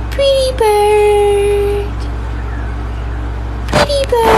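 A woman's voice singing one long held note to a pet budgie, dropping slightly in pitch just after it starts and lasting well over a second, over a steady low hum. A few short sharp clicks come near the end.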